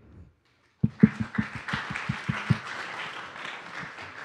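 Audience applauding, starting about a second in, with a few loud sharp claps at first and then a steady patter of many hands.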